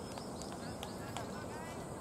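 Open-air background of distant voices, with short high chirps and a few light clicks over a steady hiss.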